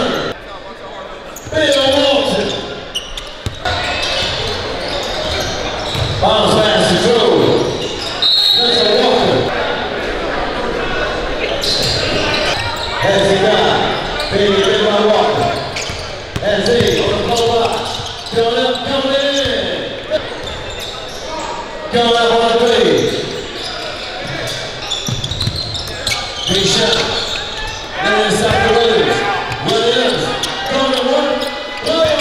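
Live game sound in a gymnasium: a basketball bouncing on the hardwood court amid voices from players and spectators, carrying through the large hall.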